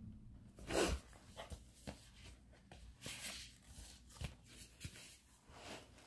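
Cardboard and paper of a fold-out CD digipak and booklet handled: soft rustling with scattered light clicks, and a louder rustle about a second in and again around three seconds in.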